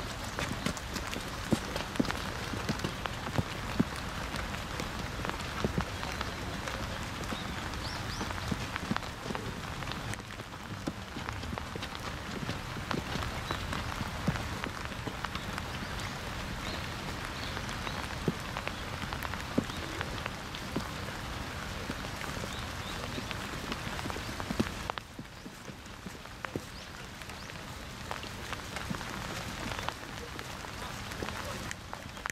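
Steady rain, with many sharp ticks of single drops. It drops a little in level about five seconds before the end.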